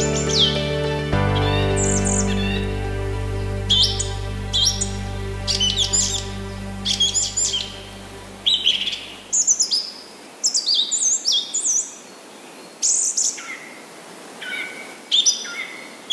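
Songbirds chirping and calling, many short high chirps, some sweeping downward, coming thick and fast in the second half. Background music of held chords runs underneath and fades out about halfway through.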